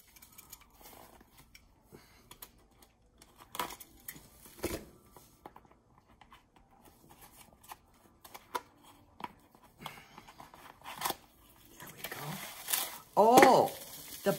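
A small cardboard box being slit with a utility knife and opened by hand: scattered sharp clicks and taps, with scraping and tearing of cardboard and packaging. A voice speaks briefly near the end.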